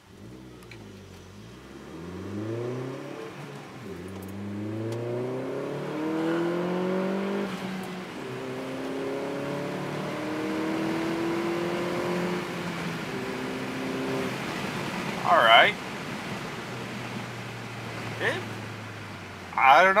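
Chevrolet Sonic RS's turbocharged 1.4-litre four-cylinder, heard from inside the cabin, accelerating hard from a standstill. The engine note climbs in pitch, drops at each gearshift and climbs again through several gears, then holds steady and eases off. The car is being tested with a newly fitted ported intake manifold.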